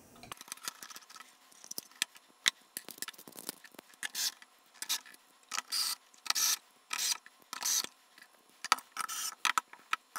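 A cordless drill-driver running in short bursts, driving small screws into a sheet-metal rack enclosure, among sharp clicks and clatter of the metal panels and screws being handled.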